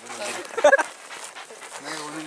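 A dog barks once, loud and short, a little past halfway, amid low men's voices.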